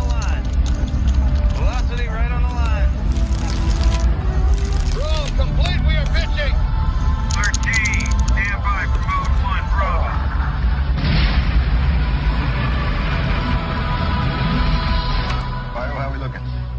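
Dramatised Saturn V rocket ascent heard from the capsule: a deep, continuous rocket rumble under an orchestral film score, with crackling, warbling bursts of radio noise through the first ten seconds or so.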